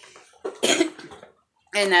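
A woman's short coughing laugh about half a second in.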